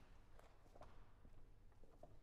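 Faint footsteps on a wooden stage floor: a few soft, separate steps over near silence.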